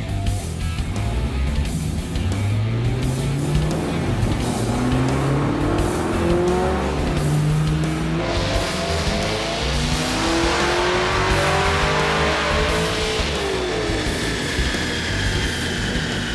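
Supercharged 6.2-litre LT1 V8 of a 2016 Camaro SS on a full-throttle chassis-dyno pull under nearly 9 psi of boost. The engine note climbs steadily in pitch for about ten seconds and grows louder and rougher as revs rise, then falls away as the throttle is released near the end.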